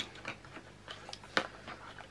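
Handling of a cardboard sample card with plastic blister pockets: faint rustling and small clicks, with one sharper click about one and a half seconds in.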